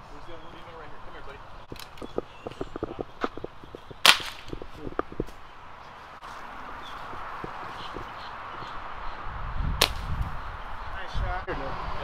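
Air rifle fired at an iguana: one sharp, loud crack about four seconds in, and a second, quieter crack near the ten-second mark, with small clicks and knocks between.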